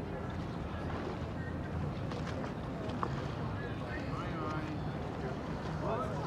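Outdoor ambience by a river: a steady low rumble with wind on the microphone, and faint voices of people talking in the background.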